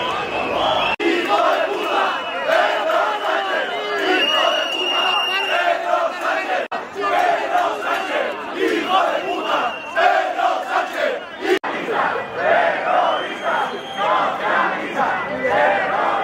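Large crowd of protesters shouting together, many voices at once, with a few sudden breaks in the sound.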